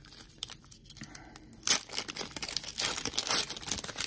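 A foil trading-card pack wrapper being torn open and crinkled by hand: little at first, then a sharp rip under two seconds in, followed by steady crackling and crinkling as the wrapper is peeled back.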